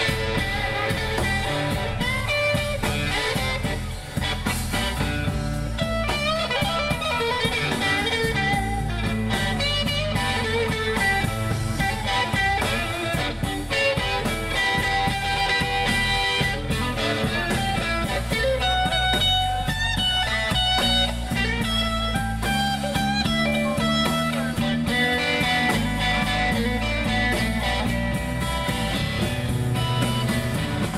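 Live blues band playing: an electric guitar takes the lead with bending single-note lines over bass and drums.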